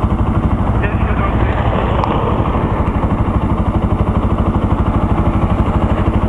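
Bajaj Pulsar NS 200 single-cylinder engine idling at a standstill, with a steady, even, rapid pulse.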